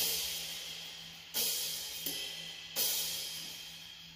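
EZDrummer 2 sampled drum kit previewing a metal intro groove: crash cymbal struck together with the kick drum twice, about a second and a half apart, each crash ringing out and fading.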